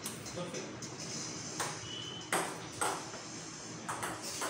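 Table tennis ball being hit by paddles and bouncing on the table during a rally: four sharp clicks in the second half, irregularly spaced, the loudest about two and a half seconds in.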